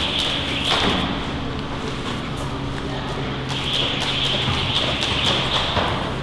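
A man climbing a thick manila climbing rope and sliding back down it: rope brushing and rasping through hands and feet, with a few knocks, over a steady low hum.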